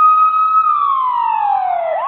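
Ambulance siren holding one steady high tone for about half a second, then sliding slowly down in pitch.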